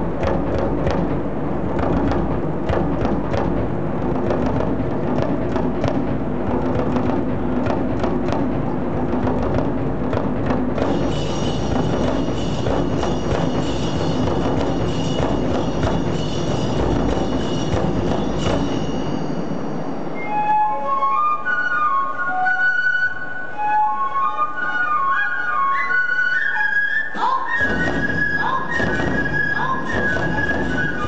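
Tachineputa festival hayashi of taiko drums and bamboo fue flutes: the drums beat steadily for about the first two-thirds, then drop out while the flutes carry a melody alone, and the drums come back in near the end.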